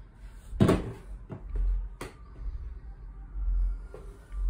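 A hard plastic clunk, then two lighter clicks, from handling a Milwaukee M12 cordless spot blower and its nozzle.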